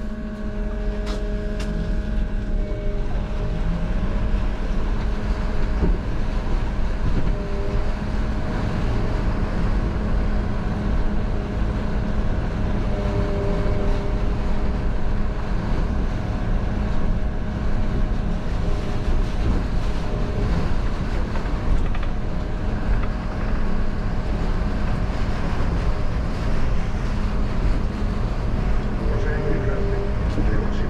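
City bus running through wet, flooded streets, heard from inside the driver's cab: steady drivetrain noise with a constant hum and tyres hissing through standing water.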